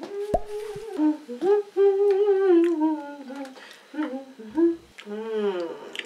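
Someone humming a slow tune, the held notes sliding up and down, with a short click near the start.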